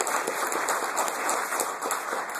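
Audience applauding: many people clapping steadily, a dense spread of hand claps.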